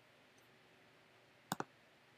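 A computer mouse double-clicked: two quick sharp clicks about a second and a half in, over near silence.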